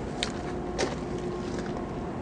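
Steady low mechanical hum with faint steady tones, with two short clicks in the first second.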